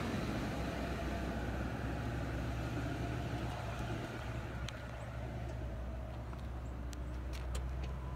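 Ford F-350 Super Duty's 6.8-litre Triton V10 gasoline engine idling steadily, a low even rumble, with a few faint clicks in the second half.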